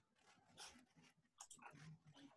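Near silence: faint open-microphone room noise with a few soft, short sounds.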